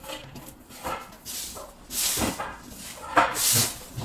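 Broom sweeping a hard floor: three main swishing strokes, the loudest near the end, with lighter scuffs between.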